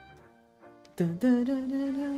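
Faint background music, then about a second in a woman's voice humming one long held note over it.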